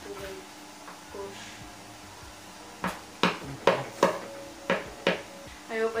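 A run of about six sharp clicks and knocks, starting about three seconds in and lasting two seconds: a plastic spray-bottle cap working against the bridge pins of an acoustic guitar to pry them out.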